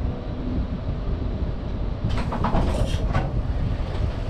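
NS VIRM double-deck electric train standing at a platform, heard from the driving cab: a steady low hum and rumble. About two seconds in comes a short run of clicks and clatter.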